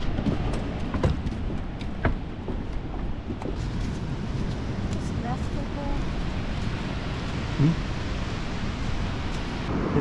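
Wind buffeting the camera microphone in a steady, rumbling rush, with a few sharp knocks in the first couple of seconds.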